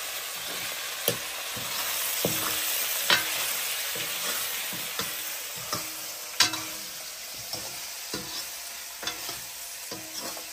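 Potato pieces sizzling as they fry in a metal wok, with a metal ladle stirring them and knocking against the pan about once a second, the sharpest knock about six seconds in.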